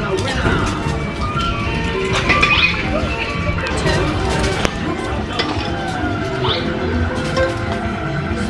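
Amusement-arcade din: game machines playing electronic music and jingle tones over background voices, with a sharp click a little past the middle.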